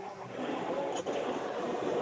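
Steady background murmur with faint, distant voices heard over a video-call line, growing a little louder about half a second in.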